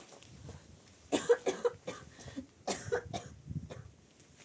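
A person coughing in two short fits of several coughs each, the first about a second in and the second about three seconds in.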